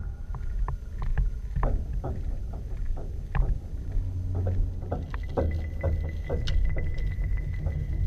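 Footsteps and a walking pole splashing through shallow water, a string of irregular sharp splashes and knocks over a steady low rumble.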